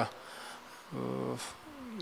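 A man's short hummed hesitation sound, an 'ehm', about a second in, during a pause in his speech.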